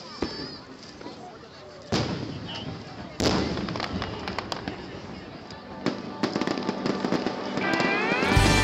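Aerial fireworks going off: a sharp bang about two seconds in and a louder one about three seconds in, each trailing off, then rapid crackling from about six seconds on. Music comes in just before the end.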